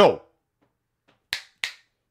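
Two crisp finger snaps about a third of a second apart.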